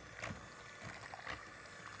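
Electric hand mixer running steadily, its beaters whipping a thin mix of instant vanilla pudding and skim milk in a glass bowl and splattering it, with a couple of faint taps.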